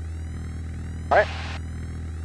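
Steady low drone of a Piper PA-28 Warrior's four-cylinder engine in flight, heard muffled through the headset intercom, with one short word spoken about a second in.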